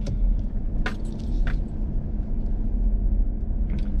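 Steady low rumble of a pickup truck running, heard from inside the cab, with two light clicks about a second in.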